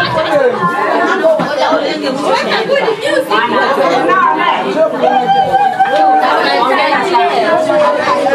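Many people talking loudly over one another in a room. In the last few seconds one voice holds a long call that falls slightly in pitch.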